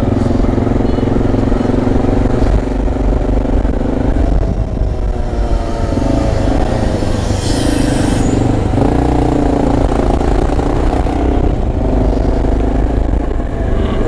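Motorcycle engine running while riding through city traffic, its pitch shifting as the bike speeds up and slows. A brief hiss comes about seven seconds in.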